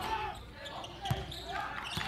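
Court sound of a basketball game in an indoor hall: a basketball bouncing on the hardwood floor, with a single low thud about a second in, under faint voices.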